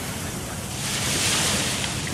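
Ocean surf breaking and washing up a sandy beach, the wash swelling about a second in, with wind rumbling on the microphone.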